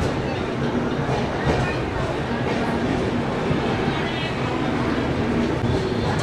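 Passenger train starting to move out of a station, heard from the open coach door: a steady low rumble from the coach, with voices of people on the platform mixed in.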